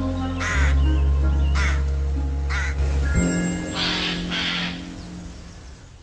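Ambient synth music with a low droning bass, with five short, harsh crow caws over it. The bass drops out about three seconds in, and the music fades away near the end.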